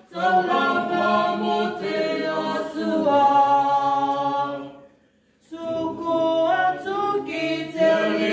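A small group of men and women singing together unaccompanied. They break off briefly about five seconds in, then sing on.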